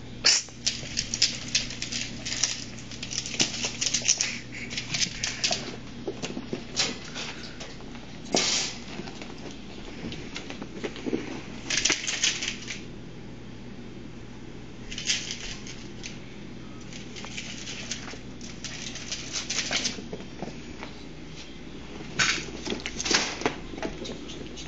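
Ferrets scrambling through and over a flexible corrugated plastic tube, their claws rattling on the ridges in bursts of rapid clicks, each from under a second to a few seconds long, coming again and again.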